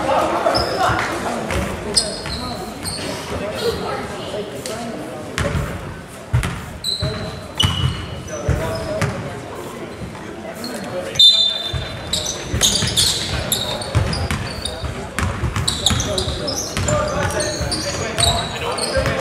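Live basketball game sounds in a gym: a basketball bouncing on the hardwood court, sneakers squeaking with short high squeaks, and players' and spectators' voices, all echoing in the large hall. A sharp knock stands out about eleven seconds in.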